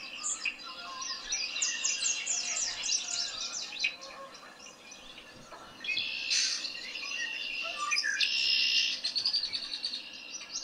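Recorded red-winged blackbird sounds played through a tablet's speaker. A quick run of high chirps and notes fills the first few seconds, then after a short lull come louder calls and a buzzy trill near the end.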